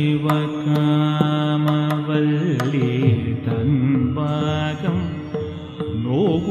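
Carnatic classical vocal music: a male singer holds long notes that waver into ornamented slides, with accompaniment and sharp drum strokes in the first half.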